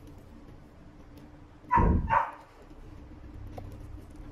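A dog barks twice in quick succession, loudly, about two seconds in.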